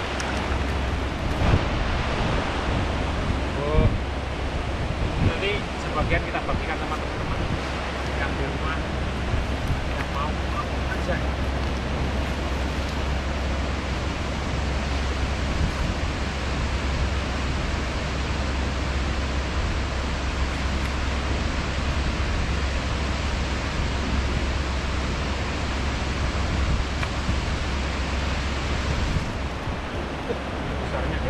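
Steady rush of a shallow, rocky river, with wind buffeting the microphone as a low rumble throughout.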